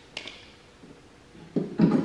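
A small click, then near the end a short rattling whirr ending in a snap: a steel tape measure's blade retracting into its case.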